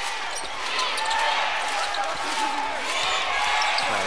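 A basketball being dribbled on a hardwood court during live play, over the steady noise of the arena crowd.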